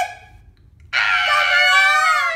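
A woman's high-pitched, drawn-out squeal of delight. It starts about a second in after a short pause and is held steady, at the moment she sees her surprise gift camera.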